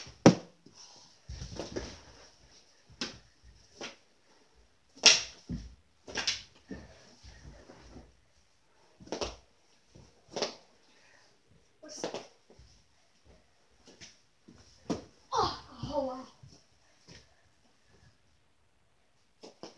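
Mini knee-hockey sticks hitting a small ball and knocking together on a carpeted floor: sharp, irregular clacks a second or two apart, with some dull thuds. A brief child's vocal sound comes near the end.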